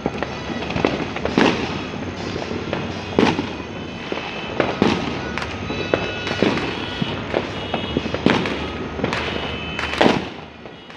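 Fireworks and firecrackers going off across a town: irregular sharp bangs, roughly one every second or two, over a continuous crackle of more distant ones.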